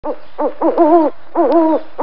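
Burrowing owl calling: three short arched notes, then two longer, wavering hoots.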